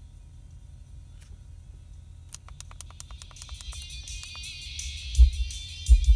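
Music from a DVD starts playing through the car stereo. A run of quick ticks builds into a full track, with deep bass thumps near the end.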